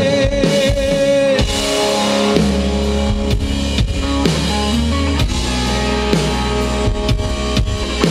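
Live rock band playing, with electric guitars, bass guitar and drum kit. A note is held for about the first second and a half, then the drums and bass carry on steadily.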